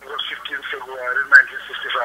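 Speech heard over a telephone line: the caller's voice at the other end, thin and tinny, as he answers the question just put to him.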